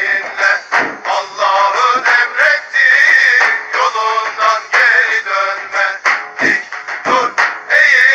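A man's loud singing or chanting voice, strained and high, in short phrases broken by brief pauses.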